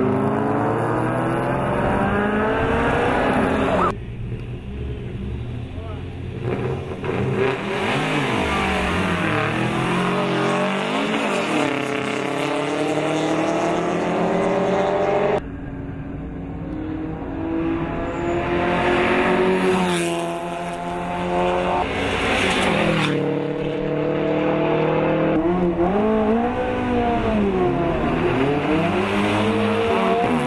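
Rally car engines at high revs, accelerating hard past trackside and running through the gears, the pitch climbing and dropping again and again. The sound shifts abruptly several times as one car gives way to the next.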